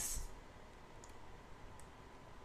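A few faint computer-mouse clicks, about one and two seconds in, over quiet room tone with a faint steady tone.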